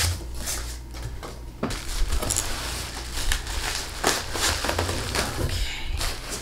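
Bubble wrap and packing material rustling and crinkling, with irregular scrapes and light knocks of cardboard, as a wrapped potted plant is handled and lifted out of its shipping box.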